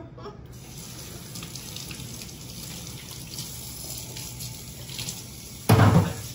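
Kitchen faucet running steadily into a copper sink as hands are washed under the stream. A sudden, loud, brief sound comes just before the end.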